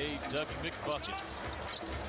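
Basketball being dribbled on a hardwood arena court, heard through the game broadcast over a steady background of arena noise.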